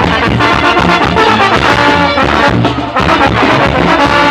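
Mexican banda music: a brass band playing a lively tune over a steady, pulsing bass, loud throughout.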